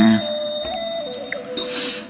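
Background music of soft, held synthesizer-like tones, with the main note stepping down in pitch about a second in.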